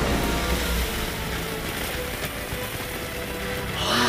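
An audience applauding: a steady, even wash of clapping under faint held music. Near the end, excited voices cheer.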